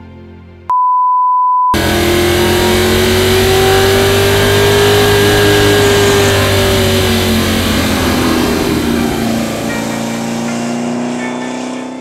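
A steady electronic beep for about a second, then the small-block V8 of a mid-engine 1965 Chevrolet Corvair Crown running hard as the car drives past at speed, its engine note rising a little, then dropping in pitch and fading toward the end.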